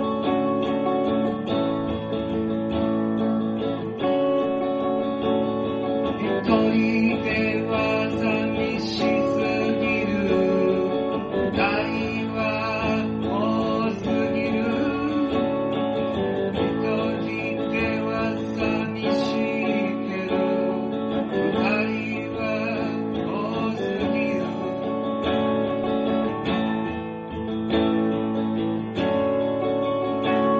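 Music: strummed acoustic guitar playing steady chords, with a wavering melody line over it from about six seconds in until a few seconds before the end.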